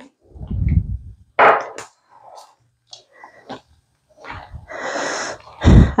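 Hands squelching through thick, wet rice-flour batter in a stainless steel bowl: irregular short squishes, with a longer wet stretch near the end and a low thump just before it ends.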